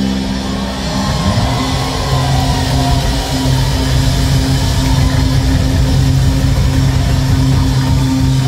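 Live rock band playing loud on electric guitars, bass and drums; a low note slides up about a second in and is then held steady under the band.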